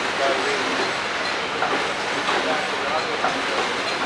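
Ammunition production-line machinery running with a steady dense rattling and hissing noise.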